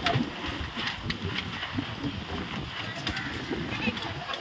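Wind buffeting the microphone, an uneven low rumble, with faint voices in the background.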